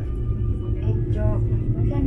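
Steady low rumble of a 101-passenger aerial ropeway gondola cabin travelling along its cable, under an announcement over the cabin loudspeaker.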